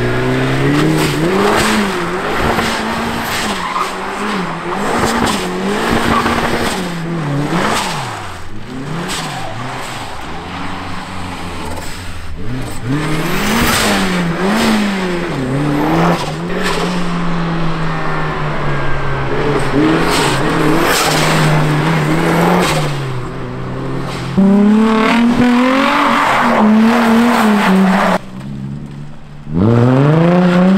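Turbocharged Mazda Miata drifting: the engine revs rise and fall again and again as the throttle is worked, over the squeal and scrub of sliding tires. Near the end the sound drops for a moment, then a Nissan 350Z's V6 revs up sharply.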